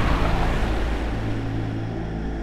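Closing sound effect of a video logo sting: a low rumble with a rushing whoosh over it, slowly fading.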